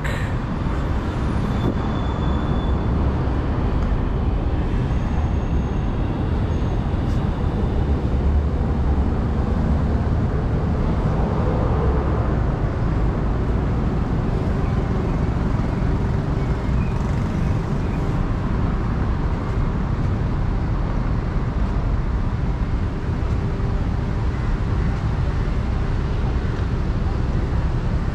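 Steady city street traffic noise: cars and other road vehicles running along a busy road.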